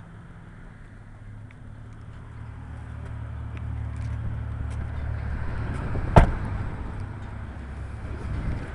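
Low steady hum of a vehicle running at idle, growing louder over the first few seconds, with one sharp knock about six seconds in.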